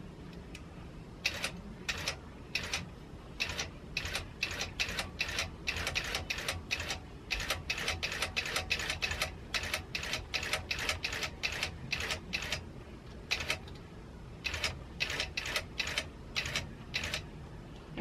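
Longarm quilting machine sewing long basting stitches down the side of a quilt. Each stitch is a separate sharp click, unevenly spaced at about three a second, with a couple of short pauses in the later part.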